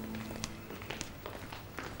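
Several light footsteps on a hard floor, walking away. The tail of a soft held music note fades out at the start.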